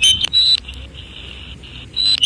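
Band noise hissing from a Quansheng UV-K5 handheld's small speaker on 20-metre upper sideband, with a short burst of distorted, clipped sideband signal in the first half-second while the frequency is being tuned. A brief high steady tone sounds about half a second in and again at the very end.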